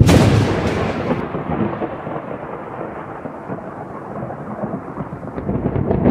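Thunderstorm: a loud thunderclap breaks in suddenly and fades over a second or two into rolling thunder over steady rain.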